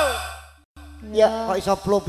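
A woman's sung note through a microphone and PA slides down in pitch and fades out at the end of a phrase, over a steady low hum from the sound system. After a brief break, a voice starts up again over the microphone with quick rises and falls in pitch.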